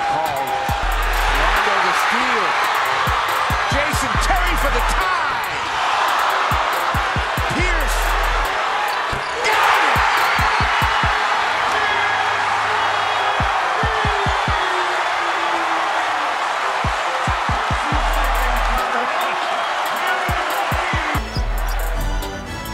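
Basketball arena crowd noise with a ball dribbling on the hardwood and occasional sneaker squeaks. The crowd swells into loud cheering about halfway through. A music track with deep bass hits plays over it, and the crowd sound drops away near the end.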